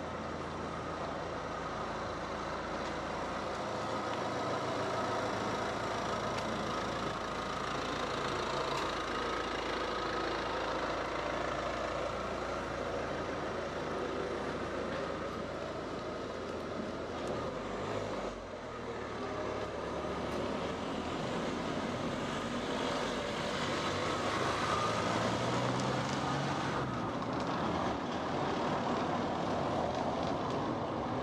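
Steady running noise of a motor vehicle's engine, with a brief dip and change about two-thirds of the way through.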